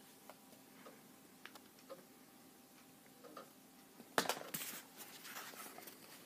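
Faint scattered clicks and light handling rustle. About four seconds in, a sharper click is followed by about a second of louder rustling.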